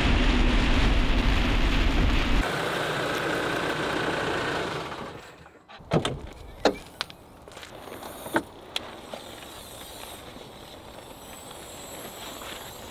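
Steady road and rain noise from a Land Rover Defender driving on a wet motorway, heard from the cabin. After about five seconds it gives way to a few sharp clicks and knocks as the Defender's rear door is opened and its pop-up roof raised.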